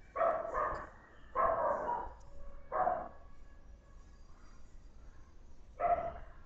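A dog barking in the background: about five short barks in the first three seconds, then one more near the end, all faint.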